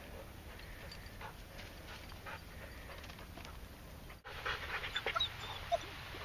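A Wirehaired Pointing Griffon panting in quick short breaths, faint at first and then loud and close for the last two seconds.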